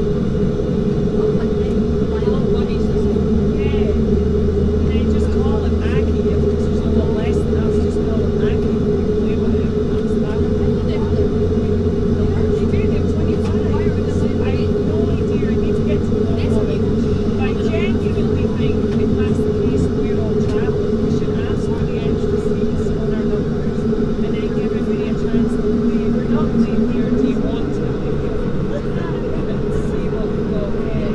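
Saab 340B's General Electric CT7 turboprop engines running steadily on the ground after startup, heard from inside the cabin as a loud, even droning hum. Near the end one tone rises slightly and fades.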